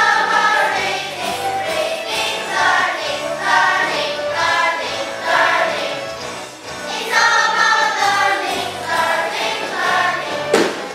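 A class of children singing an English song together as a choir, with musical accompaniment, in sung phrases with short breaks between them.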